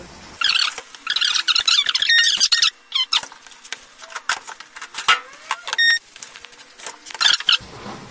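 Kitchen work at a toast shop's contact grill: squeaking and clattering as the grill is worked, with scattered clicks and two short high beeps, one about two seconds in and one about six seconds in.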